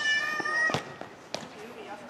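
A player's high-pitched shout, held for about a second, then two sharp knocks of the futsal ball being kicked, the first the louder.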